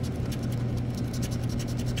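A small scraper rubbed rapidly back and forth over a lottery scratch-off ticket, scraping the coating off in quick, dense strokes. A steady low hum runs underneath.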